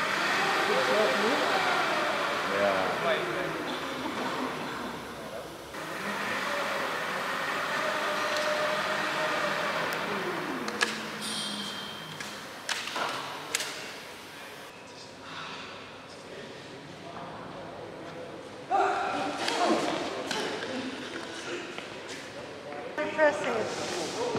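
Indistinct voices echoing in a large hall, with a few sharp knocks and thumps partway through.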